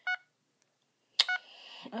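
Two short electronic key-press beeps from a Samsung touchscreen cell phone as its button is pressed and the screen wakes to the lock screen, about a second apart; a sharp click comes just before the second beep.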